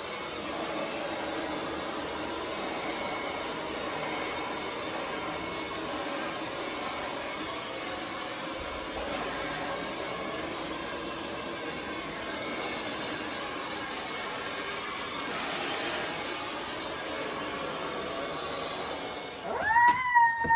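Handheld hair dryer running steadily as short hair is blow-dried, an even rush of air and motor noise that cuts off just before the end.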